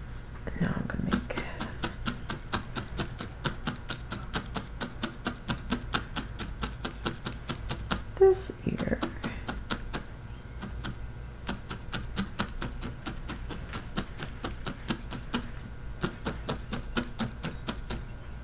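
Felting needle stabbing repeatedly into wool fibre laid on burlap, a sharp tick at each stroke, about four a second, as a flat fawn ear is being felted into shape.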